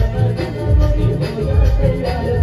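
Live Chhattisgarhi folk dance music played loud through stage loudspeakers: a steady, heavy drum beat with keyboard melody and shaker-like percussion.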